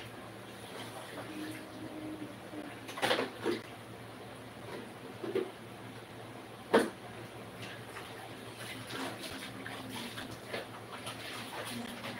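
Faint room background with a few short, sharp knocks, the loudest about seven seconds in.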